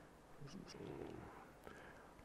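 Near silence: room tone, with a faint low murmur and a few soft clicks in the middle.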